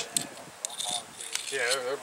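Faint light metallic clinking and jingling, a few short clicks in the first second, followed by a man saying "yeah".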